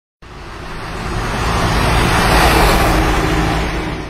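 Whoosh sound effect for a logo intro: a rushing noise that swells for about two seconds and then fades away.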